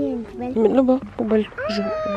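A domestic cat meowing, one drawn-out call near the end, among people's voices.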